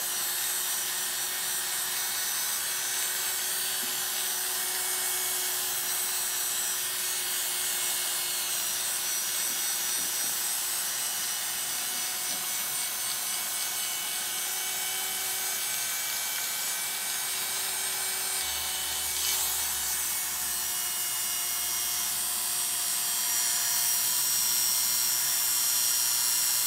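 Oster Classic 76 electric hair clipper with a number one blade running with a steady hum as it cuts and tapers short hair at the nape and around the ear.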